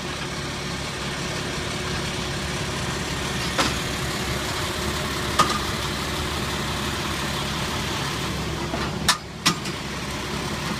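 A flatbed truck's engine idling steadily at the curb, with a few short sharp clanks about three and a half seconds in, about five seconds in, and twice near the end.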